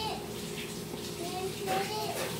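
Water running steadily from a tap, with a few short, high-pitched vocal whimpers over it.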